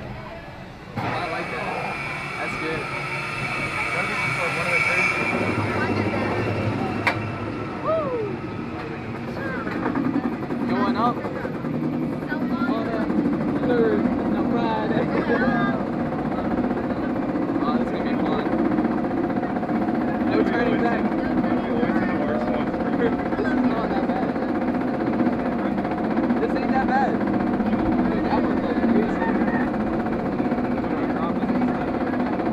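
Inverted roller coaster train pulling out of the station and climbing the chain lift hill. A steady clanking rattle of the lift chain sets in about ten seconds in, with riders' voices over it.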